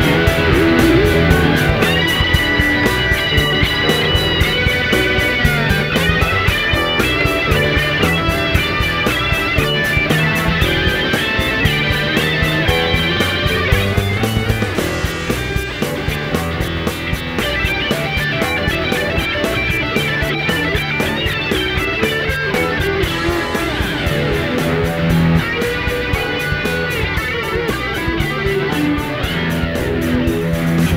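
Instrumental rock groove: electric guitars, with sustained notes that bend in pitch, over bass guitar and programmed drums keeping a steady beat.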